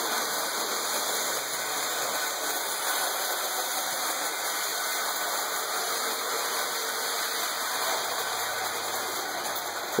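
Lionel electric toy train running on three-rail tinplate track, a steady whirring rumble of the motor and wheels.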